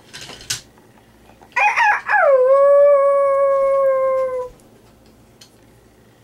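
A long animal call about a second and a half in: a few quick broken notes, then one held note lasting about two seconds that sags slightly as it ends, like the drawn-out end of a crow.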